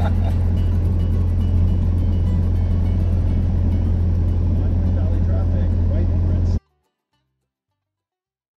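Cessna 172's engine and propeller running at low power during the ground roll after landing, a steady low drone that cuts off abruptly about six and a half seconds in.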